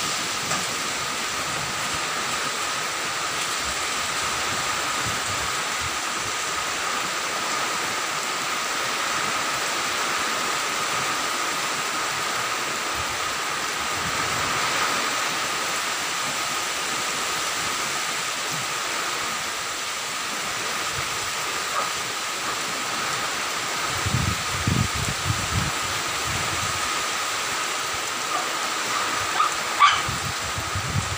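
Typhoon wind and heavy rain making a steady rushing noise, with gusts buffeting the microphone in low thumps about three-quarters of the way through and again near the end.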